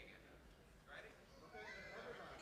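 Quiet hall with faint, scattered voices from the audience: a short high voice about halfway through and another near the end.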